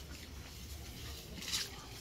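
Mostly quiet background with one brief soft rustle about one and a half seconds in, from the rooted lemon branch and its root ball being handled and set into a bucket of soil.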